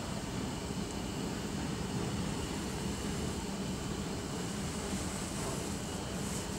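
Steady rushing hum of an underground metro station platform, with a constant low drone and no distinct events.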